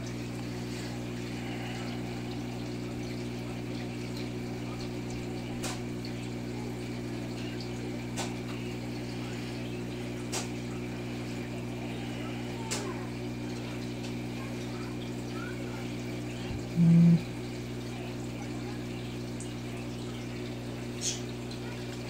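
Steady low hum of an aquarium air pump with faint water bubbling, broken by a few faint clicks and one brief louder low tone about three quarters of the way in.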